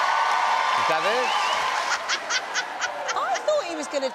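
Studio audience laughing and applauding, fading about a second in. Then a person laughs in a run of short, quick bursts.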